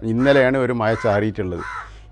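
A crow cawing in the background near the end, over a man speaking Malayalam.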